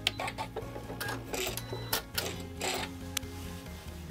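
Short clicks and rattles of plastic and metal parts being handled at a sewing machine's presser foot, about seven sharp ones spread unevenly, as the snap-on quilting sole of the ASR foot is taken off.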